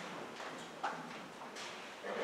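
Footsteps and light knocks on a wooden floor as a person walks and sits down in a wooden pew, with one sharper knock a little under a second in.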